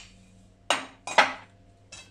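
Two sharp clinks of kitchenware about half a second apart, as dishes and utensils are handled on a kitchen counter.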